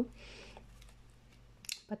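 Faint rustle of paper and card being handled by hand, with a light click near the end.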